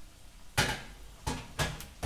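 Glass baking dish of potatoes set onto a rack in a low oven and the oven door closed: one loud knock about half a second in, then three quicker knocks and clunks in the second half.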